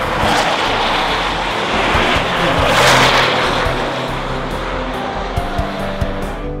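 Track-day car passing at speed on a racetrack, its noise swelling to a peak about three seconds in and then easing off.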